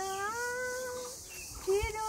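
A woman singing without accompaniment, holding one long note that rises slightly in pitch, then breaking and starting a new note near the end.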